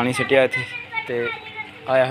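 Speech only: voices talking in short bursts.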